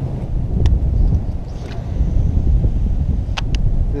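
Wind buffeting the microphone, making an uneven low rumble. A faint click comes under a second in, and two sharp clicks close together come near the end.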